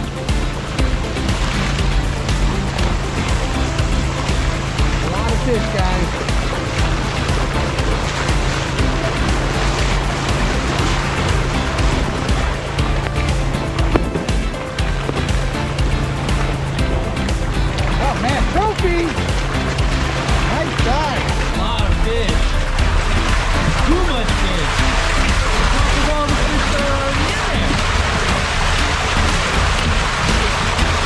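A steady, loud rush of water and trout pouring down a fish-stocking chute from a hatchery truck's tank, with background music over it.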